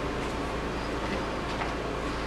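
A metal fork stirring and scraping a stiff gum mixture in a plastic cup, a few faint ticks, the clearest about a second and a half in, over a steady hiss and low hum.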